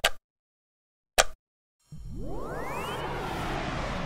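Two sharp clicks as speaker-cable banana plugs are pushed into binding posts. About two seconds in comes a steady swelling whoosh with pitch sweeping upward, a musical riser opening the sound-test track.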